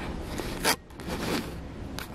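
Hands working a Canon EOS M50 mirrorless camera and its kit zoom lens, heard close on the mic: a short rasping scrape about two-thirds of a second in, then softer rubbing. The lens is being zoomed in.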